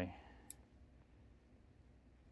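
A single sharp click about half a second in, from a gloved finger pressing the switch on an e-bike's rear tail light, over low background.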